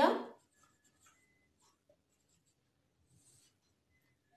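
Faint squeaks and scratches of a marker pen writing a word on a whiteboard.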